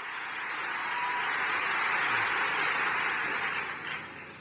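Large audience applauding, a steady wash of clapping that fades in at the start and dies down near the end.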